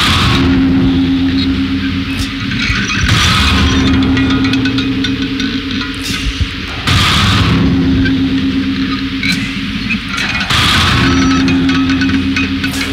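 Harsh noise music: loud, dense distorted noise over a steady low drone, with a surge of hissing high noise about every three and a half seconds.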